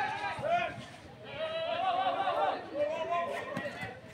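Several people shouting and calling out loudly in high, raised voices, with a brief lull about a second in.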